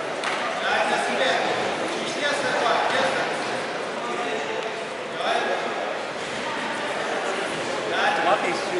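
Indistinct voices and chatter in a large, echoing sports hall, no single clear speaker.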